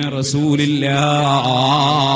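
A man's voice chanting in an intoned, drawn-out line: shorter held syllables, then from about a second in one long note with a wavering, ornamented pitch.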